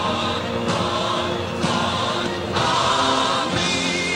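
Wrestling entrance song played over the arena's sound, with a chorus of voices singing steadily over the band. It is the anthem composed for the rudos.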